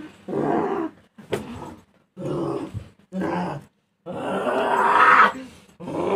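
A person undergoing ruqyah growling and groaning in about five hoarse vocal bursts with short gaps between them. The last burst is long and builds to the loudest point near the end.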